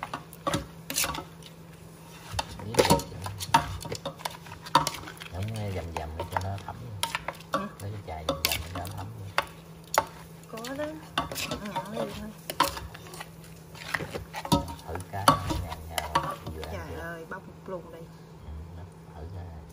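A plastic pestle and spoon working shredded green papaya salad in a stainless steel bowl: irregular clicks, knocks and scrapes against the metal as the salad is bruised and tossed in the bowl in place of a mortar.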